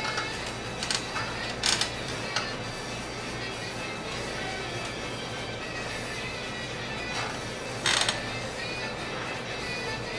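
Background music running steadily, with four short sharp scraping clicks: three in the first two and a half seconds and one about eight seconds in.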